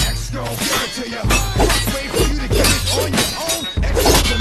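Hip hop backing track with a deep, steady bass line, overlaid by a rapid series of sharp cracking, clashing hits.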